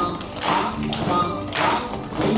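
Country square-dance music playing, with a group of children clapping along on the beat, about two claps a second.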